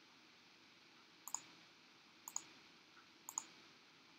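Three faint computer mouse clicks about a second apart, each a quick double tick, over near-silent room tone.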